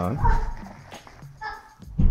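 Two short, high-pitched whimpering calls about a second apart, like an animal whining.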